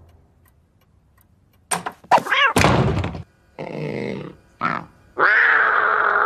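Cartoon sound effects: after about a second and a half of quiet, a thunk, a short sound that bends in pitch and a few noisy bursts, then a long held pitched sound that starts near the end.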